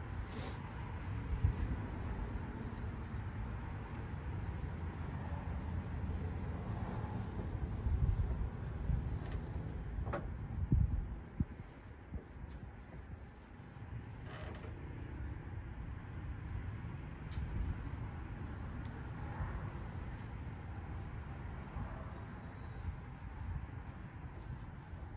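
Microfiber cloth buffing a car's painted hood, a soft uneven rubbing as a freshly applied ceramic waterless wash is wiped off, with a few light clicks around the middle.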